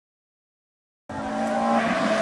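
Ferrari F430 GT race car's V8 engine running under power with a steady note, cutting in suddenly about a second in.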